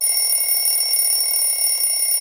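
A bell alarm clock ringing steadily, added as a sound effect.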